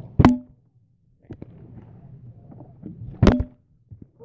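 A partly filled plastic water bottle flipped and hitting a carpeted floor: two sharp thuds about three seconds apart.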